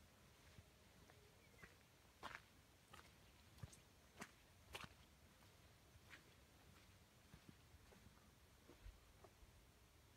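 Faint footsteps squelching in wet, half-frozen mud and matted dead grass: about half a dozen soft, irregular steps a couple of seconds in, against near silence.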